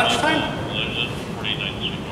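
Indistinct speech: a man's voice trailing off, then brief low-level talk, over steady background noise.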